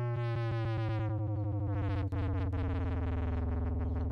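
A distorted synth bass from the MPC's Fabric plug-in, run through the Grimey distortion, holding one low note with a swirling, shifting sheen in its upper tones. The distortion's drive is being turned down as it plays.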